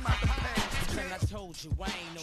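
Hip hop track with a vocal over a drum beat, fading out in the mixtape's closing seconds.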